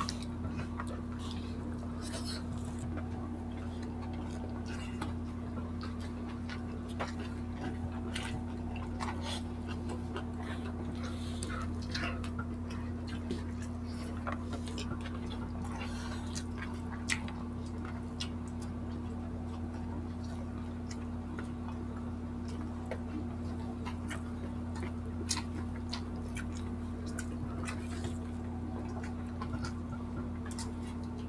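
Eating by hand at a table: soft chewing with scattered small clicks and taps of fingers and food on plates and wood, over a steady low hum.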